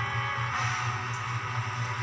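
Background music from the drama's score: sustained chords over a pulsing low note.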